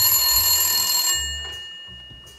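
A bell rings steadily, stops just over a second in, and its tone dies away, with a faint ring lingering.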